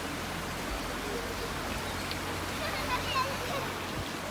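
Steady rushing of a shallow river's water flowing over rocks.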